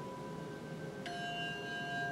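Ringing bell tones behind a meditation: a steady ringing holds, then a new bell-like tone is struck about a second in and rings on evenly.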